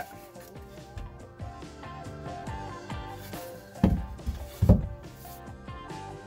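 Background music, with two deep thumps a little under a second apart just past the middle from the wooden workpiece being handled on the CNC router bed.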